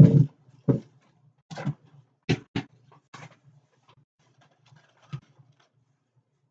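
A string of short, separate knocks and rustles as packaged items and bags are moved about and searched through, about seven in all and the first the loudest.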